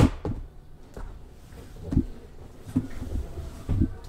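A sharp click, then several dull thumps and knocks about a second apart: objects being handled and set down on a tabletop.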